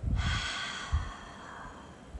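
One deep, audible human exhale that starts suddenly and fades away over nearly two seconds, taken as part of a slow breathing exercise. A low thump comes about a second in.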